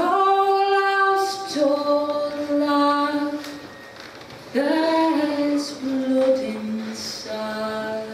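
A woman singing a slow folk song unaccompanied, holding long notes. There are two sung phrases, with a brief pause for breath a little before halfway.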